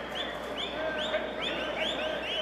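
Birds chirping: a quick run of short, similar chirps, each rising then falling, about four a second, over a steady background noise.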